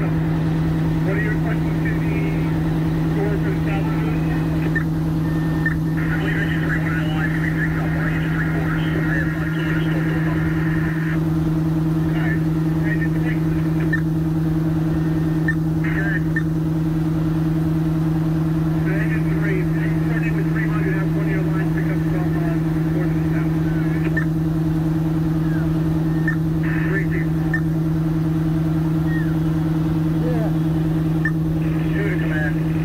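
Engines of parked fire apparatus running at a constant drone, with faint voices in the background.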